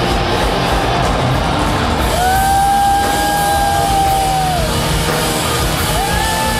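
A rock band playing live and loud, with electric guitar and a drum kit, in a dense, steady wall of sound. A long, high held note rings through the middle and then falls away.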